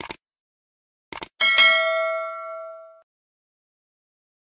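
Subscribe-button sound effect: a short click, a quick double click about a second later, then a bright bell ding that rings out and fades over about a second and a half.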